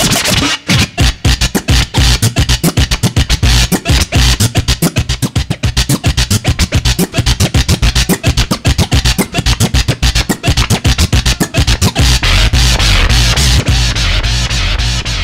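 Hip-hop DJ scratching vinyl on a turntable over a beat, the sound cut on and off rapidly with the mixer's crossfader in a transform-style scratch, several cuts a second. Near the end the cutting stops and the record plays through steadily.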